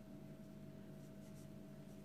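Faint scratchy rubbing of a sewing needle and yarn drawn through crocheted fabric as a leaf is hand-stitched on, over a steady low hum.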